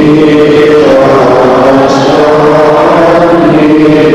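Slow sung chanting, in the manner of Orthodox church chant, with long held notes that step up and down in pitch.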